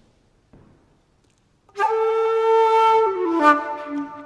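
Wooden flute and fiddle start playing together about two seconds in, opening on a long held note and then stepping down to a lower one.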